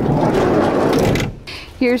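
Sliding side door of a Nissan NV200 van being rolled open: a rumbling slide lasting just over a second, then a short click.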